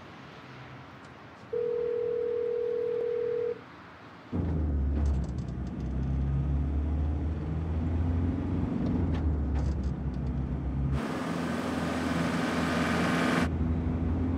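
A single steady electronic tone lasting about two seconds, then the low rumble of a car's engine and road noise heard from inside the cabin. Near the end a rush of noise rises over the rumble for a couple of seconds.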